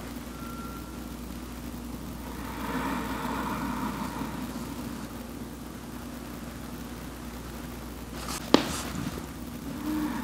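A steady low background hum that grows louder for a couple of seconds about three seconds in, with a single sharp click about eight and a half seconds in.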